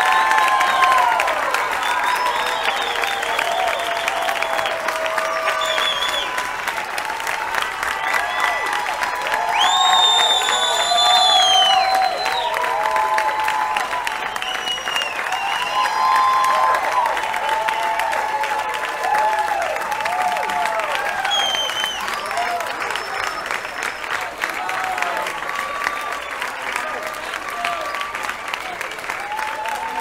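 Live concert audience applauding and cheering, with many voices calling out over continuous clapping. About ten seconds in, a high call rings out over the crowd and is held for roughly two seconds.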